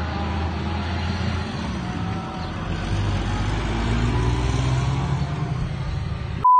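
A motor vehicle's engine running, its pitch rising about halfway through.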